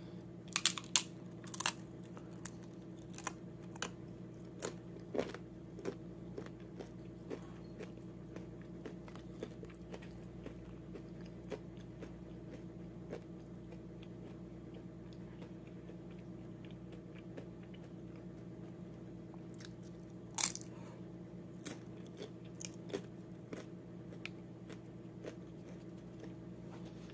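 Tortilla chips topped with corn cheese being bitten and chewed close to the microphone: a cluster of loud crunches in the first two seconds, then quieter chewing with scattered small crunches and one loud crunch about twenty seconds in.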